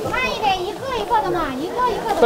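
Children's voices talking and calling out, high-pitched and continuous.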